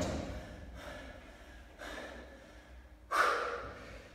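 Heavy, gasping breaths of a man winded by back-to-back exercise as he pauses between lateral jumps, the loudest breath a little after three seconds in.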